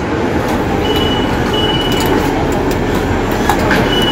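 A train running in the station: a steady rumble with a thin, high whine that comes and goes several times.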